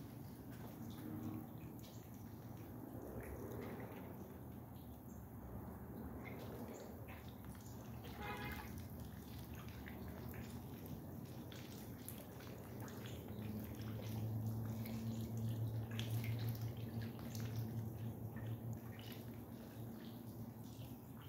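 Pond aerator bubbling up through the water, with light dripping and splashing, over a low steady hum that grows louder about two-thirds of the way through.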